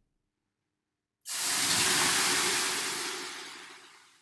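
Water thrown onto the hot stones of a sauna stove, hissing into steam: the hiss starts suddenly about a second in and fades away over the next three seconds.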